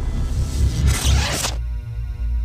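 Channel-logo intro music: a heavy bass bed under a swelling whoosh that cuts off sharply about one and a half seconds in, leaving a held chord ringing.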